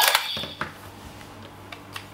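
Plastic clicks from handling a candy-toy (SG) Zero-One Driver transformation belt: a sharp click just after the start and a few lighter ones within the first second, then little sound.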